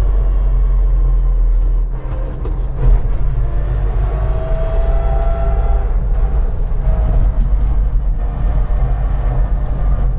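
Cab noise of an electric-converted Puch Pinzgauer rolling downhill in fourth gear: a steady low rumble from the road, with a faint gear whine from the transmission that drifts in pitch. The electric motor itself is almost silent. A couple of knocks from the body come about two and a half seconds in.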